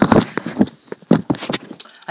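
A T-shirted chest bumping and rubbing against the recording phone's microphone: a run of loud close-up knocks and fabric scrapes that thin out near the end.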